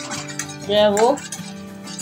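Metal spoon clinking and scraping against a stainless-steel frying pan as spices in oil are stirred, over background guitar music.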